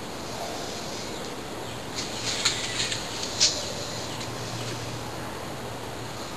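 Steady background hiss with a faint low hum, and a few light clicks and rustles of hands handling plastic pipe pieces between about two and three and a half seconds in.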